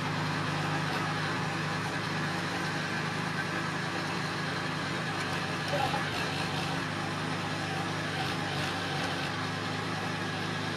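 Walk-behind tractor's small engine running steadily under load as the machine cuts a trench through soil.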